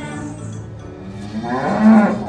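A cow mooing: one long, loud call beginning about three quarters of the way in, over the fading end of background music.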